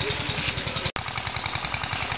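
An engine running steadily in the background with a rapid low chugging beat, cutting out for an instant about a second in.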